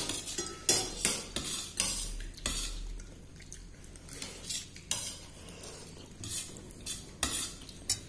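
An eating utensil scraping and clinking against a steel plate as someone eats, in irregular short strokes about every half second to a second.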